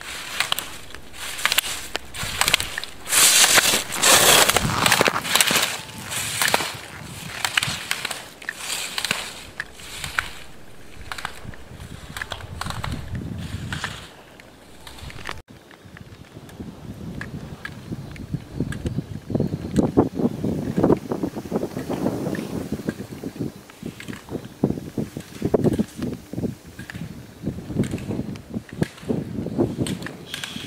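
Slalom skis scraping across firm snow in a quick run of strokes, one with each turn, loudest a few seconds in. After a cut about halfway through, the strokes sound softer and duller.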